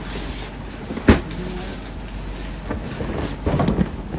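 A bedsheet being handled and shifted about, with one sharp knock about a second in, over a steady low background rumble.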